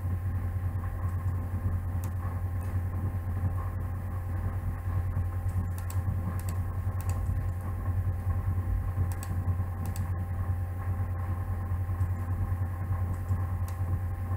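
Steady low electrical hum with a few faint steady tones above it, and scattered soft computer-mouse clicks at irregular intervals as dialog settings are clicked and dragged.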